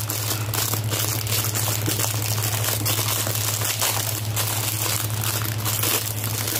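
Packaging crinkling and rustling in a steady run of small crackles as an item is handled and taken out of it by hand, over a steady low hum.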